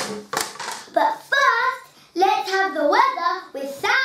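A sharp clap right at the start, then a young child's voice singing, its pitch rising and falling, through the rest.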